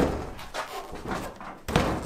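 Steel cab door of a 1976 Chevy K10 pickup, opened at its handle and then slammed shut with a single loud thump near the end. The door hangs out of line on the rusted, flexing cab.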